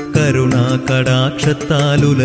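Malayalam Hindu devotional song: a singer carrying a melody over instrumental accompaniment with a steady beat.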